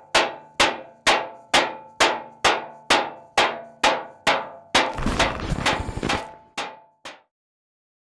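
Metal serving tray struck with a ladle, ringing bangs at a steady beat of about two a second, then a rapid flurry of hits for about a second and a half, then two last bangs.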